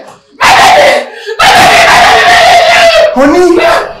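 A woman screaming in distress: a short loud cry about half a second in, then one long scream of about two seconds at a steady pitch.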